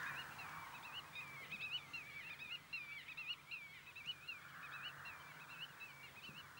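A songbird singing a fast, continuous warbling song of quick, high chirps, faint.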